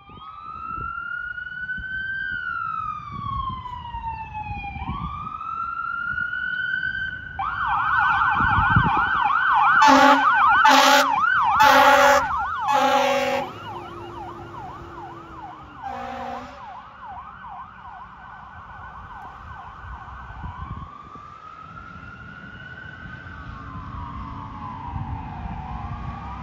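Fire engine siren wailing slowly, switching to a fast yelp about seven seconds in and back to a wail about twenty seconds in. A series of short, loud air horn blasts comes near the middle, with one more a few seconds later.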